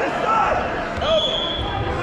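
Voices of coaches and spectators shouting and calling out in a gym hall, with a few dull thuds and a short steady high tone about a second in.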